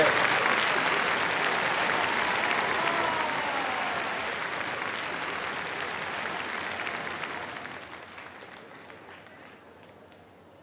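Theatre audience applauding, the applause loudest at first and dying away steadily, falling off sharply over the last few seconds.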